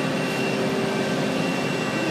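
Steady drone of heavy construction machinery running, a constant engine hum with a few held whining tones above it.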